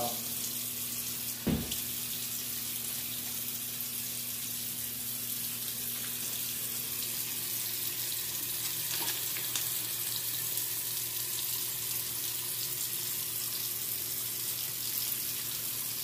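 Bathroom faucet running steadily into a sink while hands are scrubbed under the stream with a gritty pumice-and-clay hand cleaner. One short knock comes about a second and a half in.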